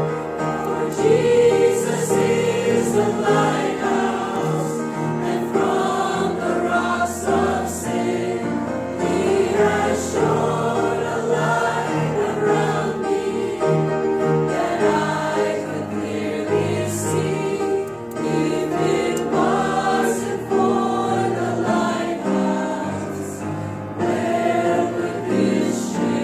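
Mixed choir of men's and women's voices singing a gospel hymn, accompanied by an upright piano.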